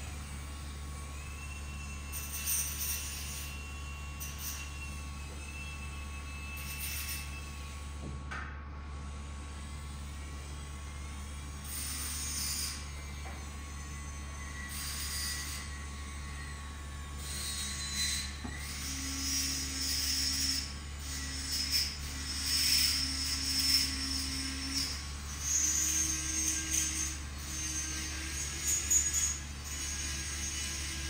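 A steady low hum, with short soft hisses every few seconds and faint music-like held notes in the second half.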